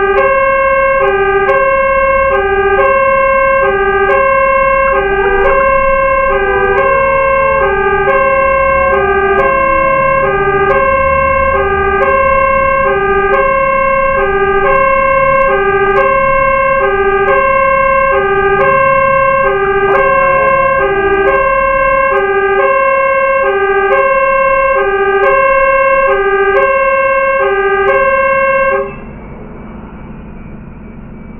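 Fire truck's electronic two-tone hi-lo siren, switching between its two notes about every half second over the low rumble of the moving truck's engine. A falling wail sweeps down through it twice. The siren cuts off suddenly near the end.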